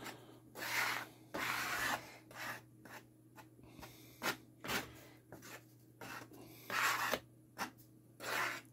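Hardboard and wood pieces sliding and rubbing over a workbench covered in plastic film, in several short swishes, with a few light taps and clicks as pieces are picked up and set down.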